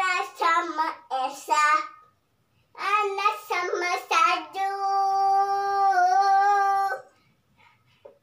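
A young girl singing without words the recogniser could catch: a few short phrases, then one long held note for about two and a half seconds that stops abruptly near the end.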